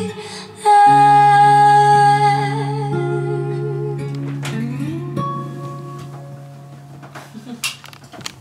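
A girl's voice holds a long final sung note over a strummed acoustic guitar chord. The voice slides up in pitch about halfway through, and voice and guitar then fade away as the song ends.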